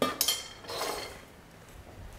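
A metal spoon clinks against a stainless steel pot of boiling pasta water, with a brief metallic ring. A short stirring swish follows about a second in.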